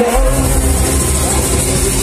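Live rock band playing loud, with the bass and drums coming in heavily just after the start and driving a steady beat.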